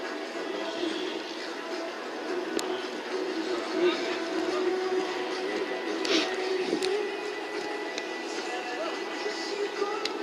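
An indistinct murmur of voices mixed with faint background music, with a few scattered sharp clicks.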